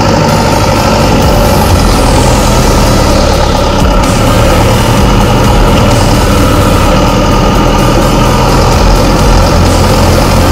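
New Holland T5.115 tractor's four-cylinder turbocharged diesel (FPT F5C, 3.4 litre) running loud and steady at constant speed, picked up close to the bonnet.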